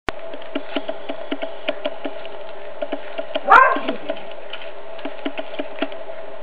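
A cat chewing a whole raw chick, its teeth crunching through the small bones and flesh in irregular sharp clicks several times a second, over a steady hum. About three and a half seconds in comes one short, loud cry that falls in pitch.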